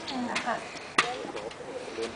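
A single sharp knock about a second in, a gladiator's training weapon striking a shield during a sparring bout, with a couple of fainter knocks just before it and voices around it.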